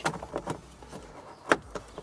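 Plastic dashboard trim of a VW T5 van being pulled by hand and unclipping from the dash: faint handling noises, then one sharp click about a second and a half in as a clip lets go, with a smaller tick near the end.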